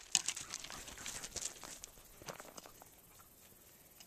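Footsteps on gravel: a quick run of light steps over about the first two seconds, thinning to a few faint ones, then quiet.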